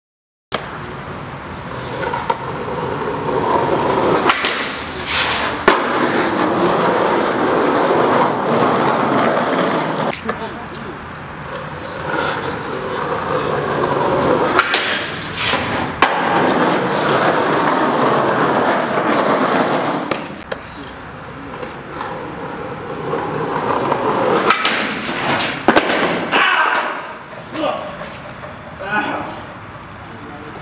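Skateboard wheels rolling over rough asphalt in several long passes, each swelling up and fading away, with a few sharp clacks of the board as it pops or lands.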